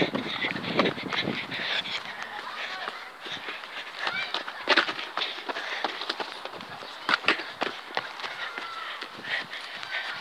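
Phone microphone handling noise as the phone is moved about and fingered, with a rustling hiss and a few sharp knocks, the clearest about halfway through and again near three quarters of the way in.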